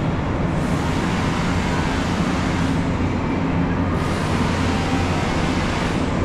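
Steady, unbroken low rumble of outdoor city background noise, with no distinct events.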